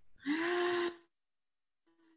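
A woman's drawn-out, level-pitched 'ooh' of hesitation while she thinks, cut off sharply after under a second. A second of dead silence follows, then a fainter, brief return of the same held note.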